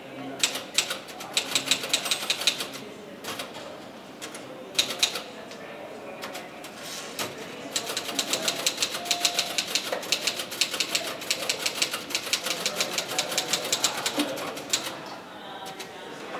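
Typing on a keyboard: short bursts of rapid key clicks over the first half, then a long, steady run of typing from about halfway to near the end, over a faint murmur of voices.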